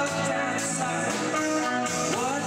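A live band playing a song, with electric guitar to the fore over a steady, sustained band sound.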